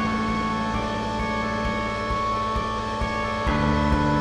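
Marching band music with wind instruments holding sustained chords. About three and a half seconds in the chord changes and lower bass notes come in.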